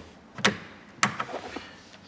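Two sharp clicks, a little over half a second apart, from a boat console's metal toggle switches being flicked.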